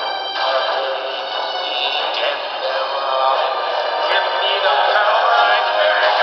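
Horror film score playing from a television, layered sustained tones building gradually louder.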